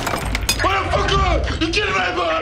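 Glass bottles shattering under gunfire at the start, then a man yelling loudly, his voice rising and falling, over scattered clinks of falling glass and debris.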